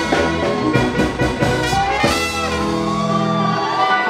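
Live band music with a horn section of trumpet and saxophone playing held and sliding lead notes over the band.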